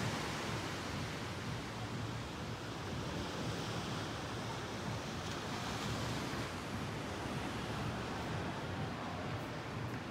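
Ocean surf washing onto the beach, a steady, even rush of noise with slow gentle swells.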